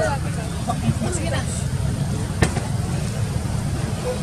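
A steady low rumble like road traffic or a running engine, with a few faint squeaky calls from the infant macaque in the first second or so, and a single sharp click about two and a half seconds in.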